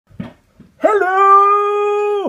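A single long howl that starts just under a second in, swoops up quickly and is then held on one steady pitch with a slight waver.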